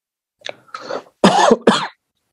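A person coughing, four short bursts in quick succession, the last two the loudest.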